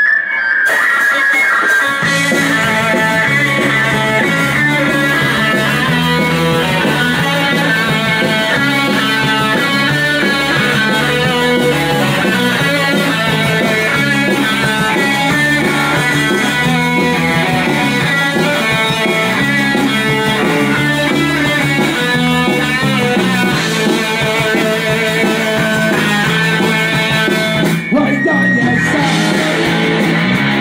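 Live oi punk band playing loud electric guitar: the guitar opens alone, and bass and the rest of the band come in about two seconds in and play on steadily.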